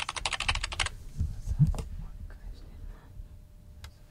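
A quick run of computer keyboard clicks, about a dozen evenly spaced keystrokes in just under a second at the start, followed by a couple of low thumps.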